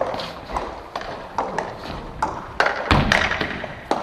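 Irregular sharp taps of a table tennis ball bouncing as a player gets ready to serve, with a louder thud about three seconds in.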